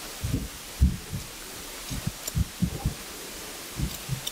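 Scissors over a comb trimming a full beard: about ten soft, low, irregular thuds as the blades close and the comb moves through the hair, with a faint metallic snip or two.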